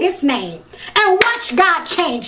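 A woman's voice, loud and drawn out in a sing-song way, its pitch sliding up and down, with one sharp clap about a second in.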